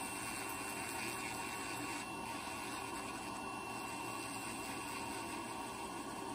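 Podiatry rotary nail drill running steadily as its burr grinds down a thickened, layered toenail, a constant motor whine with a faint high tone.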